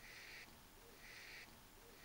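Near silence: faint room tone, with a soft sound that comes and goes about once a second.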